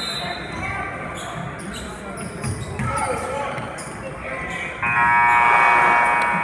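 Basketball scoreboard buzzer sounding loud and steady for over a second, starting suddenly near the end. Before it come basketball bounces and crowd chatter.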